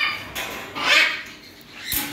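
Macaws squawking: a short harsh call at the start and a louder, longer screech about a second in.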